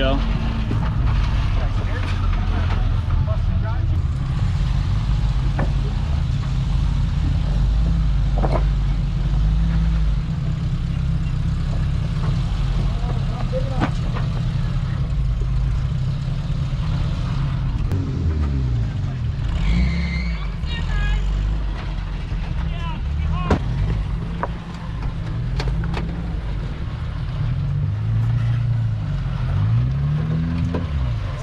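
Suzuki Samurai engine running at low revs as the 4x4 crawls over boulders, with a few short revs. Now and then tyres or underbody knock on the rock.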